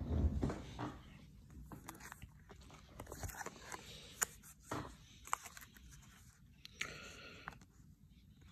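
Plastic sleeve pages of a ring binder of trading cards being turned and handled, faint crinkling with scattered small clicks.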